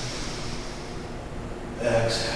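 A person's audible breath through the nose, a long soft hiss during the first second, as in yoga breathing. A voice starts just before the end.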